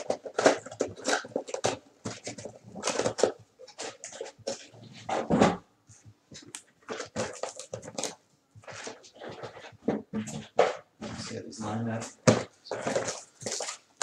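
A man talking over the handling of cardboard trading-card mini boxes, with short rustles and clicks as boxes are pulled out of the hobby box and turned over in the hand.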